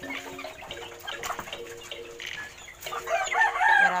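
Chickens clucking in a coop, then a rooster crowing, the loudest sound, starting about three seconds in.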